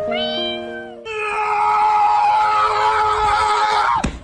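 A pet's long, drawn-out cry lasting about three seconds, starting about a second in, after a shorter, higher call heard over music.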